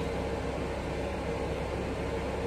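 Steady low background hum and hiss with a faint steady tone: room tone, no distinct events.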